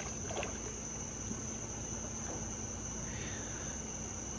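Steady, shrill insect chorus holding one continuous high tone, with a few faint brief ticks in the first half second.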